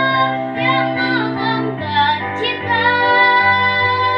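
A young girl singing solo in Indonesian, holding long notes, with piano accompaniment; the chord underneath changes a little under halfway through.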